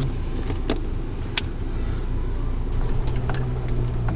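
Car engine running with a steady low hum, heard from inside the cabin while driving along a rough dirt track, with a few sharp knocks and rattles from the bumps.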